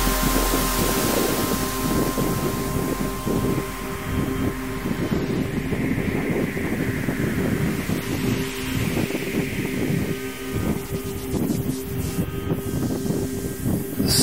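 Align T-Rex 600 LE radio-controlled helicopter with an HZ55 nitro glow engine flying: a continuous engine and rotor drone, its pitch rising and falling in the middle as the helicopter manoeuvres.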